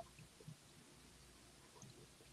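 Near silence: room tone over a call, with two faint soft ticks in the first half second.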